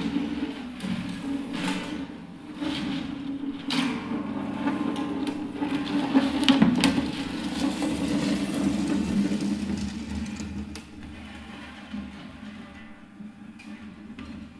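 Acoustic guitar lying face down, rubbed and pushed against the floor by hand so that its hollow body resonates in a rough, low drone with scraping strokes. The sound grows fainter in the last few seconds.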